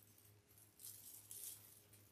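Faint crinkling rustle of deco mesh being bunched and twisted into a wire wreath form's twist ties, in two short spells.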